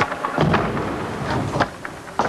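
Skateboard wheels rolling on a smooth indoor floor with a low rumble, broken by several sharp board clacks.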